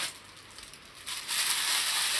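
Tissue paper crinkling as a wrapped mug is pulled from its gift box and unwrapped, starting about a second in.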